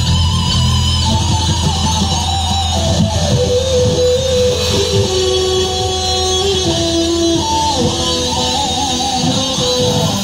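Live electric guitar solo on a Les Paul–style guitar, long sustained notes with bends and slides, played through the stage amplification over bass and drums.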